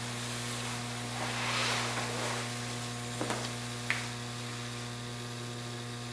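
Steady electrical mains hum, with a soft rustling swell about a second in and two faint clicks near the middle.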